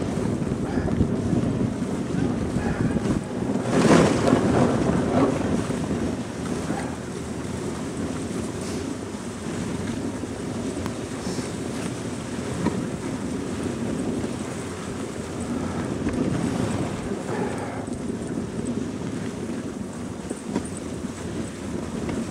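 Dog sled runners gliding over packed snow behind a husky team, a steady rushing hiss, with wind buffeting the microphone. A louder swell comes about four seconds in.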